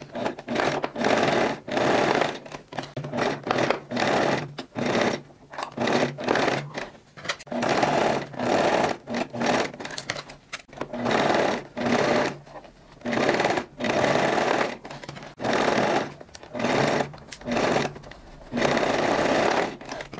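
Electric domestic sewing machine stitching a seam in short bursts, starting and stopping roughly once a second, with a slightly longer run near the end.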